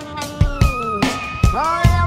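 A cat's drawn-out 'mmmm' vocalisation, pitch-tuned into a sung melody over a band track, with drum hits about every half second.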